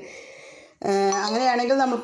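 A faint hiss that cuts off, then a voice starting about a second in with drawn-out, held tones.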